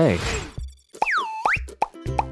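Cartoon pop sound effect, one whistle-like tone that swoops down, holds briefly and swoops back up, about a second in. A short click follows near the end, as question marks pop up in the animation.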